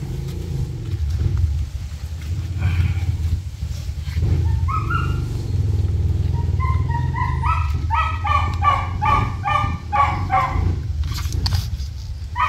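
A small dog whining in short, pitched cries that come faster and louder through the second half, about three a second, while it is held down and scrubbed in a bath. Under it runs a steady low rumble.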